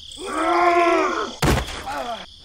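A cartoon-style strained voice groan, just over a second long, rising and then falling in pitch, followed by a sharp thump-like impact.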